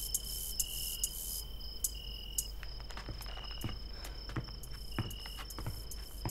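Crickets chirping: a steady high trill with louder short bursts about once a second, and a few faint taps in between.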